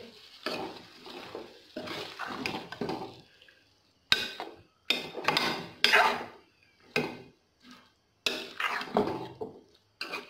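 A metal ladle stirring radish pods, potato wedges and water in an aluminium pot, scraping against the pot, in a series of separate strokes with short pauses between them.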